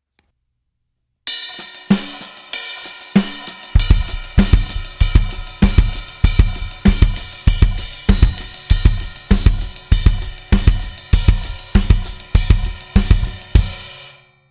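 Drum kit playing a funk ostinato: a cymbal and snare pattern starts about a second in, and from about four seconds in the bass drum joins in pairs of strokes, groups of twos against the ostinato. The playing stops just before the end, leaving the cymbal ringing briefly.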